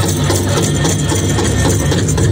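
Pow-wow drum group playing a song on a big drum, a steady, even beat.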